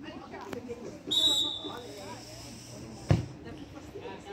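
A referee's whistle gives one short blast, signalling the restart. About two seconds later a football is struck with a single sharp thud, the loudest sound, as the set piece is taken.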